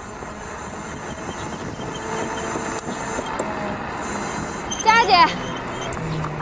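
An electric scooter approaching, heard as a steady noise that swells gradually. About five seconds in comes a brief, wavering, voice-like call.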